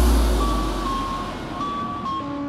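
Industrial hardcore electronic track in a breakdown: a deep bass tone fading away under a sparse synth line of held, beeping high notes.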